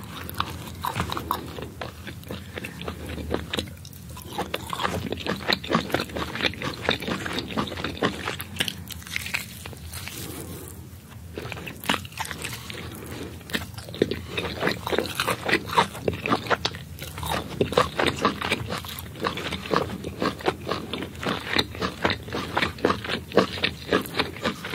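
Close-miked eating of steamed sand lizard: irregular crunches as skin and small bones are bitten, and chewing with wet mouth clicks. There are short pauses about four and eleven seconds in.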